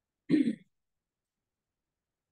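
A person clearing their throat once, briefly.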